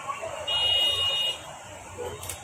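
A steady, high-pitched buzzing tone, held for just under a second, starting about half a second in.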